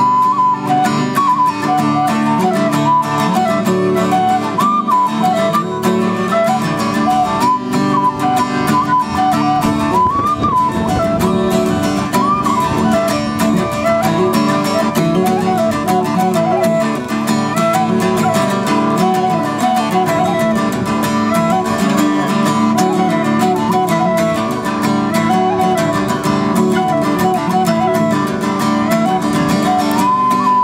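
Tin whistle playing a quick, ornamented folk melody over a strummed acoustic guitar.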